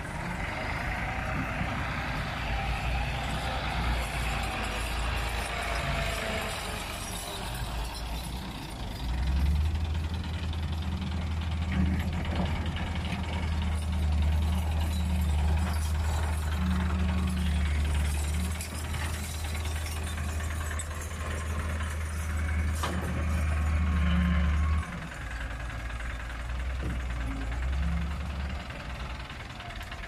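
Massey Ferguson tractor's diesel engine running close by. It swells to a louder, deep steady drone about nine seconds in, then drops back sharply near the end.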